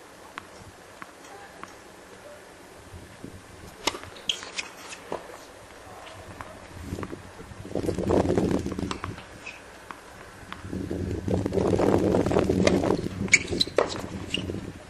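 Tennis ball struck by rackets and bouncing on a hard court: sharp pops in a cluster about four seconds in and again near the end, with voices nearby in between.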